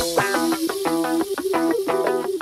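Background music: a plucked guitar line in a quick, even rhythm with a high hiss of cymbal over it, the drums having dropped out.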